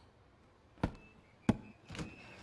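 Two sharp knocks about two-thirds of a second apart, the second one louder.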